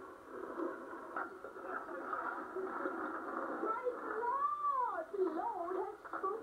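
Indistinct voices from a VHS home video heard through a television speaker, thin and muffled. A drawn-out rising-and-falling voice comes between about four and six seconds in.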